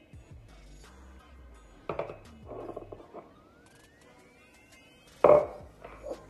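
Scattered knocks and clatters of kitchen utensils against a bowl as ingredients are spooned in, the loudest a sharp knock about five seconds in. Faint background music plays underneath.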